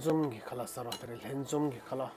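A man talking, with a few light clinks of chopsticks against a steel hot pot, about a second in and again halfway through.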